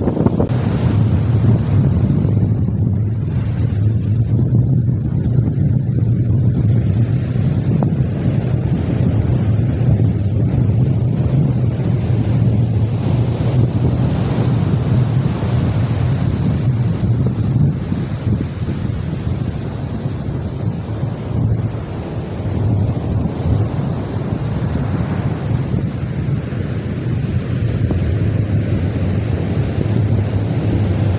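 Surf breaking steadily on a sandy beach, with wind buffeting the microphone as a low rumble throughout.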